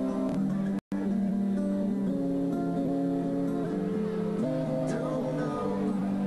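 Guitar music: held chords that change every couple of seconds, with no drums. The sound cuts out completely for an instant about a second in.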